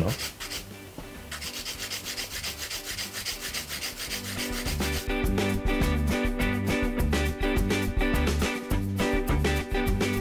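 Hand nail file rubbing back and forth along a long gel stiletto nail in quick, regular strokes. About halfway through, background music with a steady beat comes in and grows louder than the filing.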